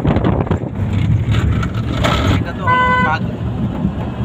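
A van driving on a rough road: steady engine and road rumble heard from inside, with one short horn blast about two and a half seconds in.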